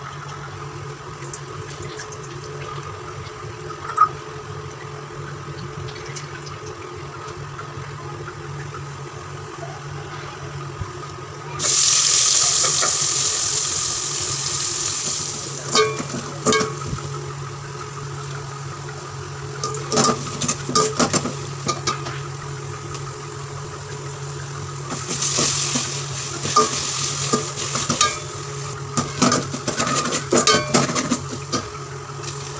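A steady low hum under a quiet stretch, then about twelve seconds in a loud frying sizzle starts suddenly as food goes into hot oil in an aluminium pot and slowly eases. Sliced onions then fry in the pot while a perforated metal spoon stirs them, clinking and scraping against the pot, with the sizzle swelling again near the end.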